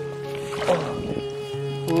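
Background music holding one long steady note over a lower sustained drone, with a short burst of noise about a third of the way in.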